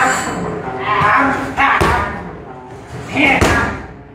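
Strikes smacking into Muay Thai pads held by a training partner: two sharp slaps, the first a little under two seconds in and the second about a second and a half later.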